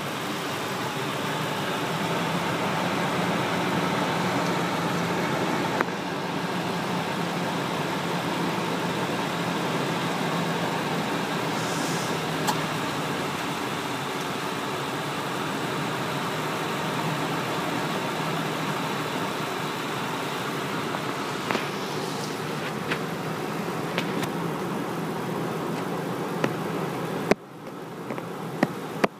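2002 Ford Expedition's 4.6-litre V8 idling steadily with the hood open, until the sound cuts off near the end.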